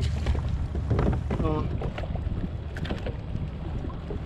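Wind buffeting the microphone on open water from a kayak, a steady low rumble, with a few short sharp knocks about three seconds in and a brief voice about a second and a half in.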